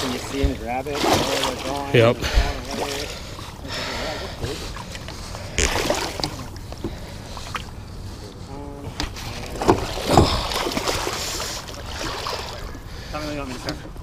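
Water splashing and sloshing as a muskie moves in a landing net beside a boat, with several sudden louder splashes.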